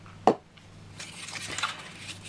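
A sheet of foam board handled on a plastic cutting mat: a short sharp tap about a quarter second in, then a soft scraping rustle as the board slides across the mat.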